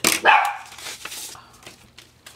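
A dog barks once, short and sudden, right at the start, followed by faint paper rustling as a greeting card is slid out of a paper envelope.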